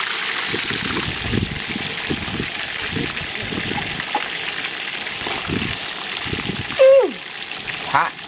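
Whole tilapia deep-frying in hot oil in a wok, a steady sizzle with small handling knocks. Near 7 s comes one short, loud sound that falls in pitch, and after it the sizzle is quieter.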